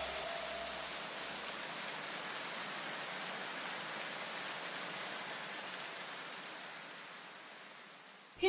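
A faint, even hiss that slowly fades away over several seconds, like the noise tail at the end of an electronic music track.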